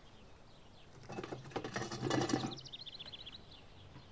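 A second and a half of clattering, rattling handling noise, then a small bird's quick trill of about ten short, high chirps.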